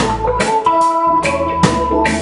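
Live reggae band in an instrumental gap between sung lines: a keyboard holds a sustained organ chord over drums and bass. The bass drops out briefly near the middle.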